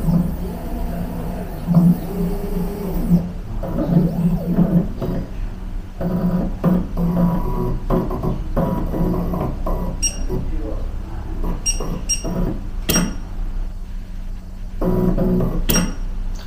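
Background music, broken in the second half by a few short, sharp clicks from the TRK air-puff tonometer firing puffs of air at the eye, the loudest about thirteen seconds in.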